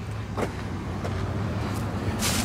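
Steady low motor hum, with a brief soft sound about half a second in.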